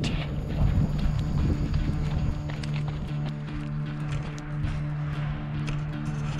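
Running footsteps, shoes striking a dirt trail in short strikes, over background music with steady held low notes.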